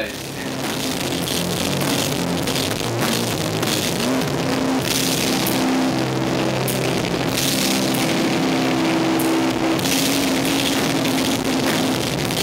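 Rock band playing live: electric guitars and a drum kit with cymbals, loud and continuous.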